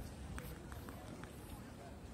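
Outdoor ambience of a paved public square: faint indistinct voices of people nearby over a low rumble, with a few scattered light clicks.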